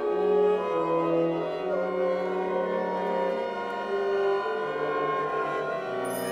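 Contemporary chamber-ensemble music: long, overlapping held notes, largely bowed strings in the low and middle range, the pitches shifting every second or so.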